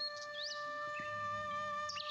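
Soft background music holding a few steady notes, with a couple of faint, brief high chirps.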